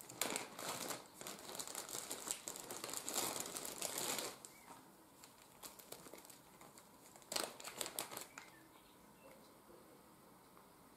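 Plastic packaging of a wax-melt crumble sachet crinkling as it is handled and opened, for about four seconds, then again briefly near the end.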